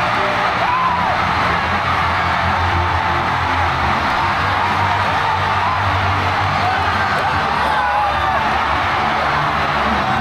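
Music playing loudly while a large stadium crowd cheers, with players nearby shouting and whooping in celebration.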